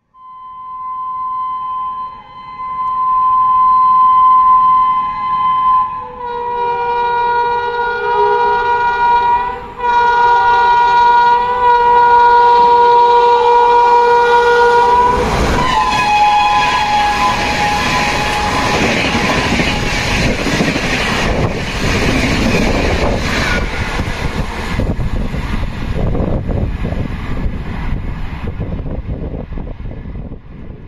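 Vande Bharat Express electric trainset sounding its horn in one long continuous blast as it approaches at speed, with a second, lower horn tone joining about six seconds in. The horn's pitch drops as the train passes, and then comes the loud rush of wheels and air as the train runs through at full speed, tailing off near the end.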